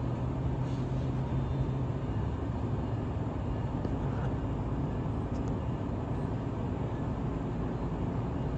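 Amtrak San Joaquin passenger train of Siemens Venture cars standing at the platform, giving off a steady low hum and rumble from its engine and onboard equipment. A low steady tone in the hum weakens after about three seconds.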